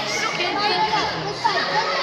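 Many young voices chattering and calling out at once, a busy overlapping hubbub of players and spectators at a youth futsal game.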